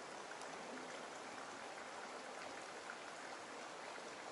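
Faint steady hiss of running water, with no distinct splashes or knocks.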